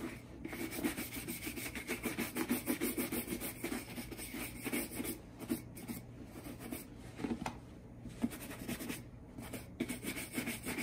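A small shoe brush scrubbed rapidly back and forth over the leather upper of a Red Wing Iron Ranger 8111 boot, a quick rasping rub with a few short breaks in the second half.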